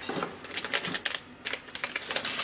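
Plastic seasoning sachets from an instant-noodle cup crinkling as they are lifted out and handled: a rapid run of sharp crackles in several clusters.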